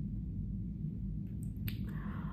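A low, steady background hum with two faint, sharp clicks about one and a half seconds in.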